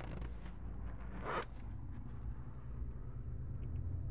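Rustling, scraping handling noise over a steady low rumble, with one louder swish about a second in.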